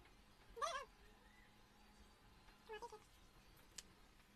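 A cat meowing faintly, two short calls that each rise and fall in pitch, the first about half a second in and the second, quieter, near the end, with a single small click shortly after.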